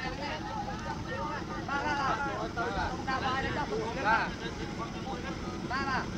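Voices talking over a steady low rumbling noise.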